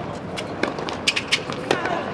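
Tennis balls being hit with rackets on a hard court in a rally: several sharp hits, the loudest near the end, which is the near player's forehand.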